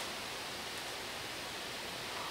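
Steady, even hiss of room noise with no other sound.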